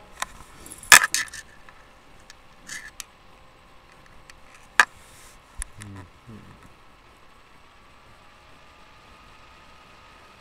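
Handling noise close to the microphone: a cluster of sharp clicks and a light rattle about a second in, the loudest sound, then single sharp clicks near the middle, with a brief low vocal sound just after.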